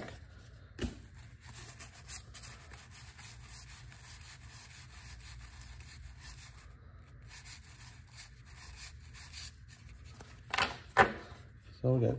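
1987 Donruss baseball cards, thin cardboard, rubbing and sliding against one another as a stack is shuffled through by hand: a faint steady rustle with light ticks, a sharp click about a second in, and a few louder taps a little before the end.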